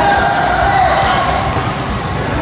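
Several children's voices chattering and calling out at once, none of it clear enough to make out as words.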